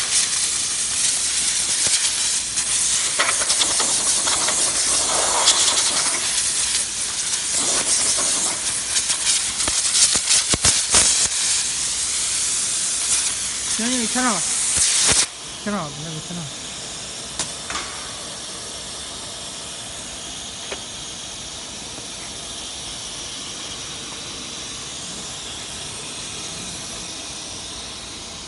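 Compressed-air blow gun hissing loudly as chips and dust are blown off a routed board on a CNC router table, cutting off abruptly about fifteen seconds in. After that a quieter, steady machine noise continues.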